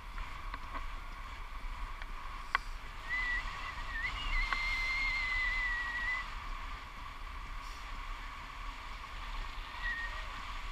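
Airflow rushing over the action camera's microphone in a paraglider flight, a steady noise. Partway through, someone whistles a single held note for about three seconds, wavering a little at its start, and there is a sharp click shortly before.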